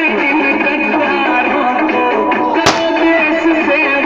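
Music playing throughout, with one sharp bang about two-thirds of the way through: a firecracker going off.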